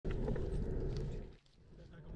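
Wind rumble on a handlebar-mounted camera's microphone as a bicycle rolls along a paved road, dropping away about one and a half seconds in.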